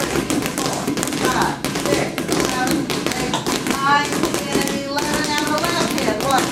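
Several inflated playground balls bounced one-handed on a hard floor by a group at once, making many quick, overlapping, irregular taps.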